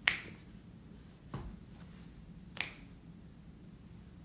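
Finger snaps keeping a slow, even beat, about one every second and a quarter: a sharp snap right at the start, a duller one about a second later, and another sharp snap near the middle. He is snapping out the tempo of a song before singing it.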